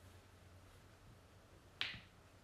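Quiet room tone, broken by one short, sharp click near the end.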